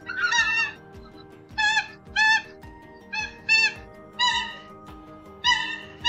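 Common coot (Fulica atra) calling: a series of about seven short, loud pitched calls, several coming in quick pairs. Steady background music is held underneath.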